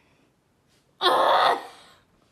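A sudden loud burst of breathy, hissing noise at the mouth about a second in, lasting about half a second, as a jelly fruit candy is bitten open.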